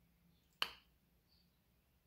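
A single short, sharp click about half a second in, otherwise near-silent room tone.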